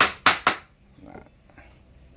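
Hammer striking a wooden slat crate: three quick, sharp blows about a quarter second apart.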